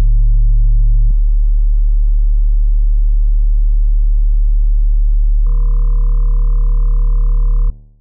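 Sustained electronic sine-like tones: a loud low hum with a stack of steady higher tones above it. The chord shifts about a second in and again a little after halfway, then cuts off abruptly near the end.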